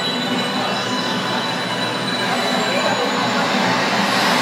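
Sound effect of a team intro video played through a PA system: a loud, steady rushing noise with thin, high, sustained tones over it.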